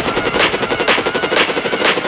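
Electronic dance track in a bass-less section: a very fast stuttering, rapid-fire pattern with bright percussive hits about twice a second. The deep bass and kick fall away at the start.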